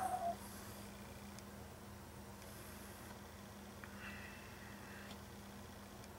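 Faint sniffs of bourbon being nosed from a Glencairn glass, over a steady low hum. A brief hummed vocal sound right at the start is the loudest part.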